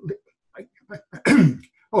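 A man clears his throat once, a little over a second in, after a few faint mouth sounds, then begins to say "Oh".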